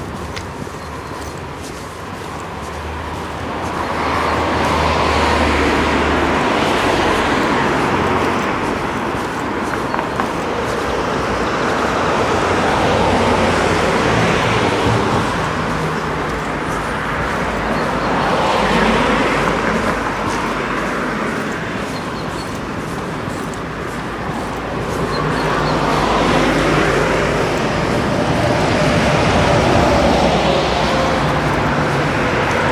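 Road traffic on a town street: cars passing one after another, each a swell of tyre and engine noise that rises and fades, with a city bus passing near the end, where it is loudest.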